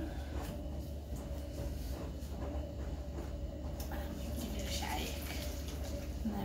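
A plastic screw cap being twisted onto a small plastic water bottle, then the bottle of water and glitter tipped and shaken, the water sloshing in the last couple of seconds, over a steady low hum.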